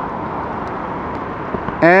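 Steady outdoor background noise at a moderate level, with a few faint light clicks as the plastic roof-rack cross-bar fitting is handled.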